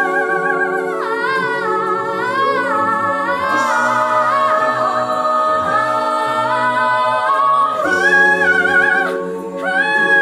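An a cappella choir holds sustained chords while a female soloist sings a high, wordless wailing line with strong vibrato over them, pausing briefly near the end.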